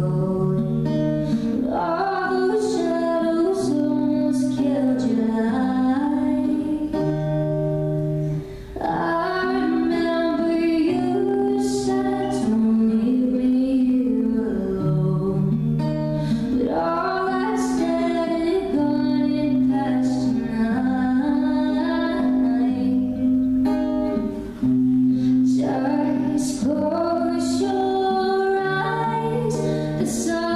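A woman singing with her own strummed acoustic guitar accompaniment, in phrases separated by short breaths.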